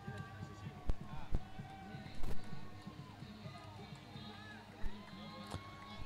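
Faint, distant voices of players and onlookers on an open cricket ground, with a few sharp clicks or knocks scattered through.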